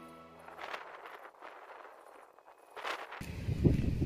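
Soft background music fades out in the first half-second, followed by a few faint scattered clicks. About three seconds in, wind starts rumbling on the microphone outdoors.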